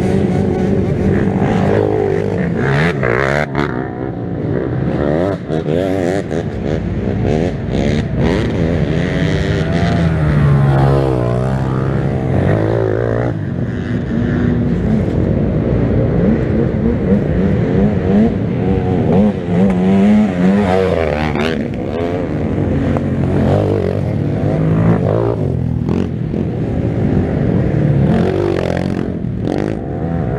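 Several youth ATV engines revving, their pitches rising and falling and overlapping as the quads ride through a muddy race section.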